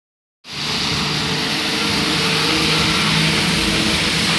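Street traffic on wet asphalt: a steady hiss of tyres on the wet road as a car and a rubber-tyred Translohr tram pass close by, with a steady low hum beneath. The sound starts abruptly about half a second in.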